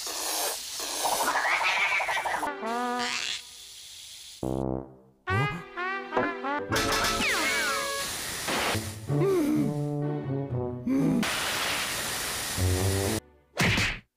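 Cartoon soundtrack: music with comic sound effects, including the hiss of water spraying from a garden hose.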